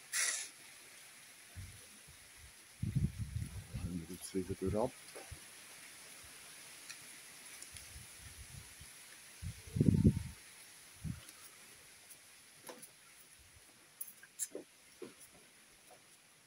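Quiet open-air ambience with a steady faint high hiss. A few muttered words come about three to five seconds in, and a short, loud low burst about ten seconds in.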